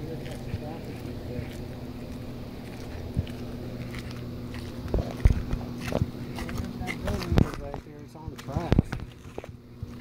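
A steady low hum, with scattered knocks of footsteps on concrete.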